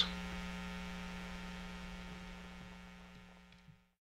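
Steady electrical hum with a row of evenly spaced overtones, fading out gradually over about three and a half seconds and then cutting off to silence just before the end.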